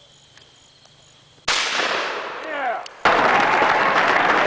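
A shotgun shot about a second and a half in, its noise dying away over a second or so with falling tones running through the tail. About three seconds in comes a dubbed-in burst of loud, even noise that starts and stops abruptly.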